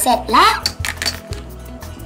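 Background music with a steady bass line and light ticking percussion. A girl's voice gives a short spoken exclamation near the start.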